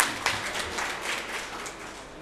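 Applause, dying away steadily.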